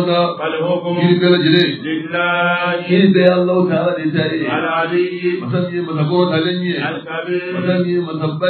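A man's voice chanting a religious invocation in Arabic in long, held notes at a nearly steady pitch, with only brief breaks between phrases.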